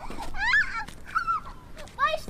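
A small child's two high-pitched squeals, each rising then falling, as she is swung around by the hands.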